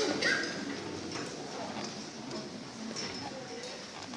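A short laugh and quiet murmuring from an audience, with a few light scattered knocks and clicks.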